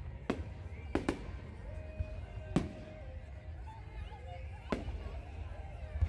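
Aerial firework shells bursting overhead: about five sharp bangs, two in quick succession about a second in and single bangs near the middle and later on.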